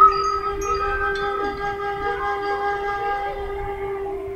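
A long, steady pitched tone with several overtones, holding one note without wavering.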